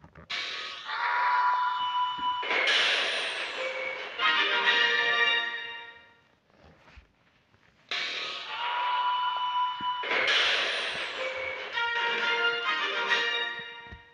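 Short television closing-logo music, the same passage of about six seconds heard twice with a brief quiet gap between.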